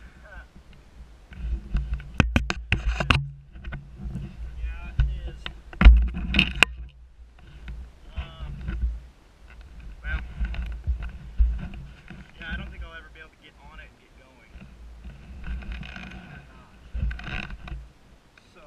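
A fallen Kawasaki dirt bike being hauled upright on loose rock: scuffing and handling noise with sharp clunks, the loudest about six seconds in, and the rider's wordless grunts and hard breathing.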